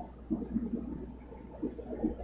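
Quiet aquarium room: a steady low hum with faint, irregular water gurgling and bubbling from aquarium filtration.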